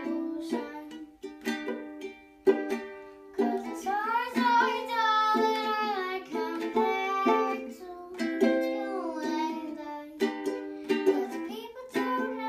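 Soprano ukulele strummed in steady chords, with a girl's voice singing over it from about three seconds in.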